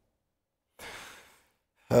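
A man's audible breath, about half a second long, taken in a pause just before he starts speaking; the moments around it are near silent.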